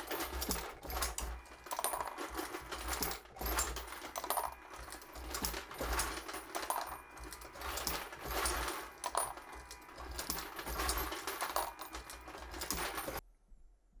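Hornady Lock-N-Load AP progressive reloading press cycling as it sizes and deprimes 7.62x51 mm brass fed from its case feeder: repeated metallic clinks and clatter of brass cases, with a low thump on each stroke about once a second. It stops near the end.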